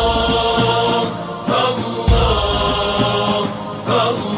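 Arabic Sufi devotional chant (nasheed): voices holding long, drawn-out notes, with a deep drum beat about two seconds in.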